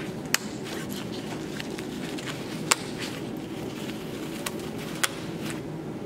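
Metal press snaps on a stroller seat pad clicking shut one at a time: three sharp clicks about two and a half seconds apart, the middle one the loudest.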